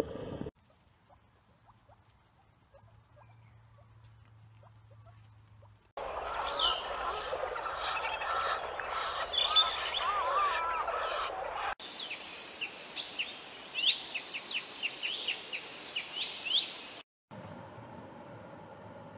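Near silence with a few faint clicks for the first several seconds, then, from about six seconds in, outdoor ambience full of bird chirps and calls. About twelve seconds in it changes abruptly to higher, denser bird chirping.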